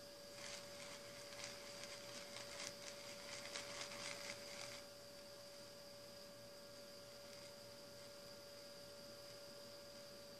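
Quiet room with a faint, steady electrical hum. A soft hissing swish is heard over it for the first few seconds and stops about five seconds in.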